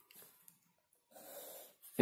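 Faint sounds: a few light pen strokes on paper, then a soft breath drawn in near the end, just before speaking resumes.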